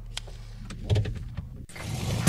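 Slowed, pitched-down skit audio of a car's interior: a low, steady engine hum with a few scattered clicks, changing abruptly near the end.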